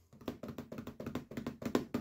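Fingertips tapping on the closed lid of a ThinkPad X200 laptop: a quick, uneven run of light taps, about six or seven a second.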